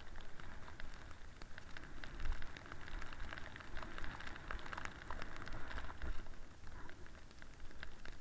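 Snowboard sliding over snow down a slope: a steady scraping hiss with many small crackling ticks, swelling in the middle. Wind buffets the microphone underneath as a gusty low rumble.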